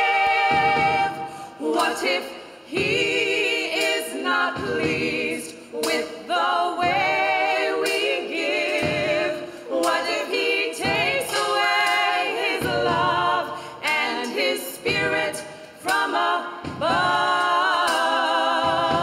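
Small all-female gospel choir singing a cappella in harmony, voices with vibrato, in phrases broken by short breaths.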